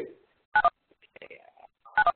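Short two-note electronic beeps like telephone keypad tones, heard twice about a second and a half apart, from the web-conference audio line as the call is being ended.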